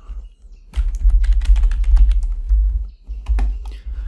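Typing on a computer keyboard: a quick run of keystrokes, each with a heavy low thud, a short pause near three seconds, then a few more keys.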